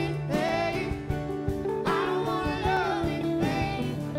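Live band performing a song: singing over guitars, keyboard and drums, with regular drum hits.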